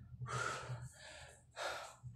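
A man breathing hard, winded from a boxing workout: two loud, rushing breaths about a second apart, the first longer than the second.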